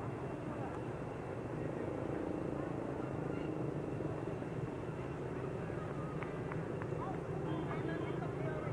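Outdoor ambience: a murmur of indistinct voices over a steady low rumble, with a few short high chirps in the second half.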